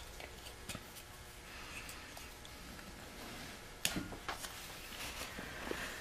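Carving knife with a modified Mora blade paring small shavings off a basswood figurine: a few short, crisp slicing cuts. The sharpest comes about four seconds in.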